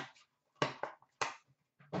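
Light knocks and taps from a cardboard trading-card box and its insert tray being handled and set down on a glass counter, about four short strokes spread through two seconds.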